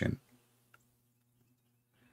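The last of a man's word, then near silence: a faint steady hum and a single small click about three-quarters of a second in.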